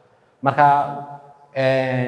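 A man's voice, after a short silence, drawing out two long, held syllables about a second apart.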